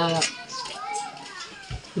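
Faint voices of children playing in the background, after a woman's soft words end at the very start.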